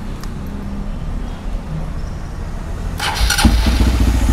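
Bored-up Honda CRF150L single-cylinder four-stroke engine starting about three seconds in, catching after a brief rough burst and settling into a steady, louder idle through a Norifumi Rocket 4 aftermarket exhaust. A low rumble runs before it starts.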